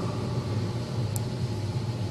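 Steady low hum with background hiss, the room tone of a microphone and sound system, with one faint short tick about a second in.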